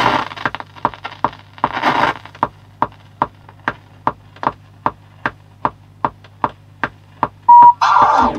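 Start of a dusty vinyl record playing on a turntable: regular crackles and pops from dust and grime in the groove, about two or three clicks a second, over a low steady hum. Near the end, a short loud steady tone.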